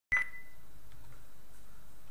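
A single short high beep right at the start, dying away within about half a second, followed by faint steady room noise.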